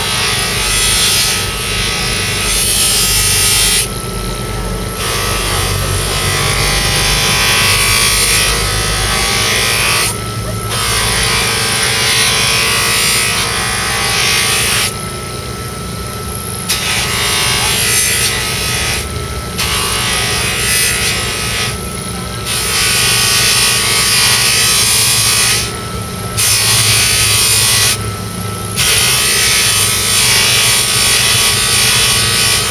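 Bench grinder running with a kitchen knife's edge held against its buffing wheel charged with green polishing compound: a steady hiss of the edge being polished. About every few seconds the blade is lifted off for a moment, leaving only the motor's hum and a faint steady whine.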